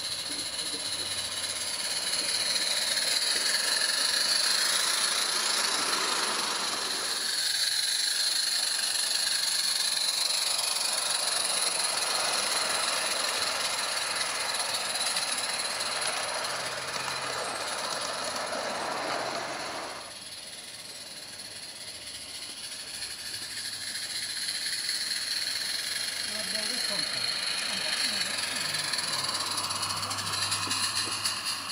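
Small live-steam garden-railway locomotives running: a steady hiss of steam that swells and fades as the trains pass, with sudden shifts about a third and two-thirds of the way through.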